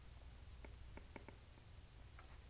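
Faint light ticks of a stylus tip tapping on a tablet's glass screen during handwriting, several quick taps in the second half, over a low steady room hum.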